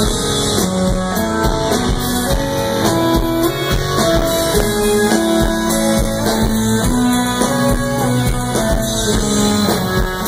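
A live band playing an amplified instrumental groove: guitars over a drum kit keeping a steady beat, heard from the crowd in front of the stage.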